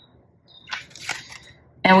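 Tarot cards being handled: a card drawn from the deck and flipped over, heard as a few brief, faint scrapes and flicks about a second in.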